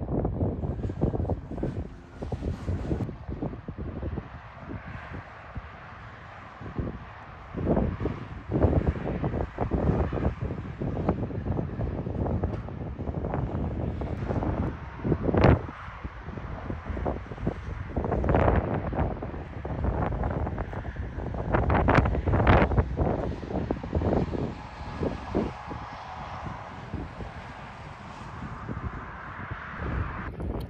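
Wind buffeting the camera microphone: an uneven low rumble broken by sudden louder gusts.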